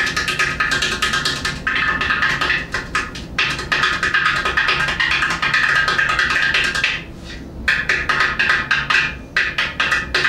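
Hands on Drums Cajudoo, a large ceramic udu-style pot drum with a drumhead, played solo with rapid finger strokes in Indian ghatam technique: a dense stream of ringing, clicky strokes that breaks off briefly about seven seconds in.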